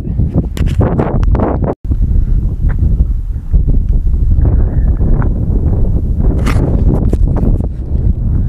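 Wind buffeting the camera microphone on an exposed summit: a loud, steady low rumble, with scattered light knocks and clicks over it. The sound cuts out completely for an instant just before two seconds in.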